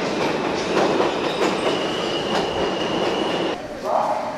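New York City subway train pulling into the station, a loud steady rumble of wheels on rails. A high squeal joins it partway through and cuts off abruptly about three and a half seconds in.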